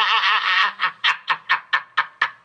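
A man laughing: a drawn-out wavering note breaks, under a second in, into a run of short rapid laughs at about four a second.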